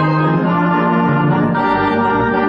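Organ playing silent-film accompaniment: full, sustained chords over a held bass note, with the harmony changing about one and a half seconds in.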